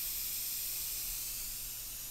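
Steady hiss with a low, even hum under it. Nothing starts or stops.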